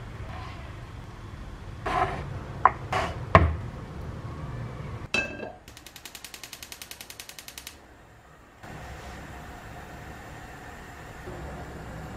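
Kitchenware being handled: a few sharp knocks, then a ringing clink like glass or crockery. This is followed by a rapid, even ticking of about ten clicks a second that lasts roughly two seconds and stops abruptly.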